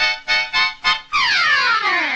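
Harmonica music on a cartoon soundtrack: about five short, clipped chords in the first second, then a long chord that slides steadily down in pitch.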